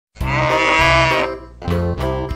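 A cow moos once, a single loud call lasting about a second, over backing music that begins at the same moment.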